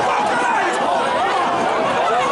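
Many overlapping voices talking and calling out at once, a steady chatter with no single voice standing out.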